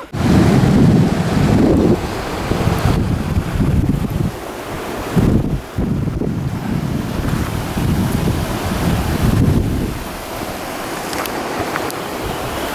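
Wind buffeting the camera microphone in uneven gusts, strongest in the first couple of seconds and easing near the end.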